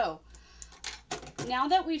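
A few light clicks of small metal thread snips being picked up and set down on the sewing machine's plastic bed, followed by a woman starting to speak.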